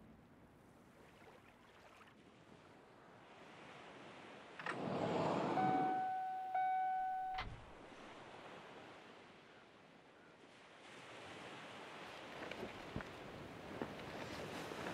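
Faint steady surf-like hiss. About five seconds in, a louder rushing noise swells and a steady electronic beep sounds for about two seconds, broken once, then both stop suddenly with a low knock.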